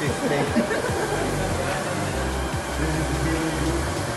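Steady airy running noise of a large-format roll-to-roll UV printer at work, with a low hum coming in about a second in, over background music and faint voices.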